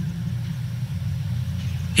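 Steady low background hum with no other events.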